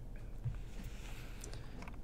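Quiet studio room tone in a pause between sentences: a faint steady low hum and hiss, with a few faint small ticks.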